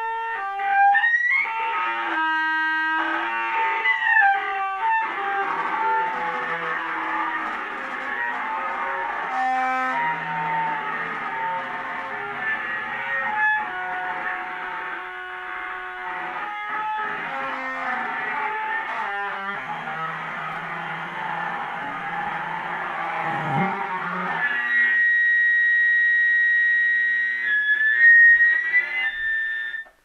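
Acoustic feedback between a microphone and a transducer taped to a soprano saxophone's bell, sounding as a noisy, buzzing drone whose pitches keep shifting as the saxophone is moved toward and away from the mic. A little before the end it settles into a steady high pitch, with the player's body between mic and transducer, then wavers again.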